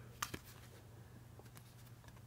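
Playing cards being slid from hand to hand, two faint clicks about a quarter second in, then quiet handling over a steady low hum.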